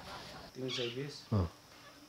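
A man's voice making two short vocal sounds, the second shorter and louder.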